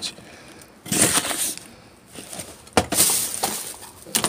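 Thin plastic bag crinkling and rustling as small boxed items inside it are pushed around by a gloved hand, in two bouts, the second starting with a sharp click.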